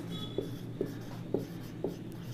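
Marker pen writing on a whiteboard: four short strokes about half a second apart as a word is written.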